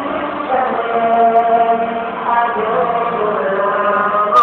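Live male singing through a handheld microphone and PA, with long held notes that shift in pitch.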